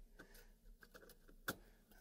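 Near silence with faint handling ticks and one sharp click about one and a half seconds in, as a wrench is brought to a server CPU heatsink's screws.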